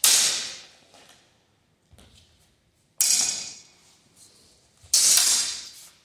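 Steel longsword blades clashing three times: at the start, about three seconds in, and about five seconds in. Each strike rings bright and high and fades over about a second.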